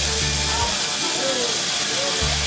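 Band saw cutting lengthwise through a large timber block, a steady high hiss, with background music playing over it.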